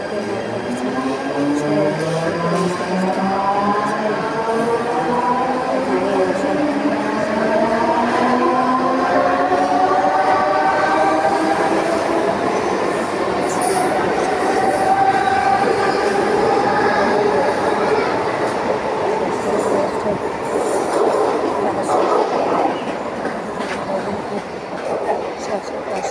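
Electric suburban local train pulling out of the platform: its traction motors whine in several tones that climb steadily in pitch as it gathers speed, over the rumble and clatter of the wheels. The whine dies away in the last several seconds as the train leaves.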